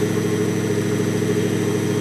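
Bedini SSG-style monopole pulse motor running at a steady speed, giving an even, unchanging hum.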